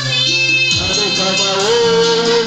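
A man singing a Swahili gospel song into a microphone over an amplified backing track with a steady bass line, holding a long note near the end.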